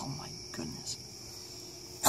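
Crickets chirping steadily, a continuous high-pitched note, with a few faint soft sounds in the first second.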